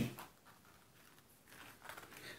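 Very quiet: a knife cutting into a small, soft-walled chili pepper pod, with a few faint soft clicks near the end.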